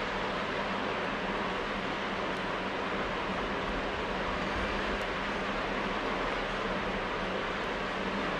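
Steady, even background hiss with a faint low hum. No other event stands out.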